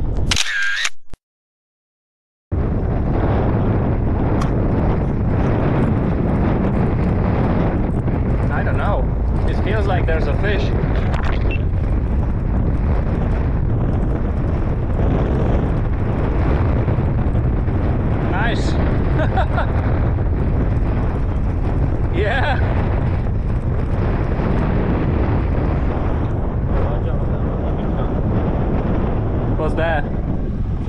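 Wind buffeting the microphone over the sea on a small open boat, a steady rumbling noise, after a brief sharp sound at the very start and a second of dead silence.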